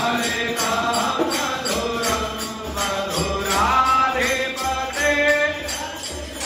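A Hindu devotional hymn sung as a chant over music, with a regular beat of jingling percussion; a low bass pulse joins about two seconds in.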